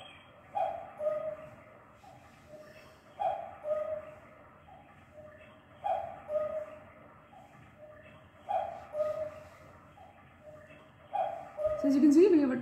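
An animal's falling two-note call, a higher note then a lower one, repeated five times about every two and a half seconds.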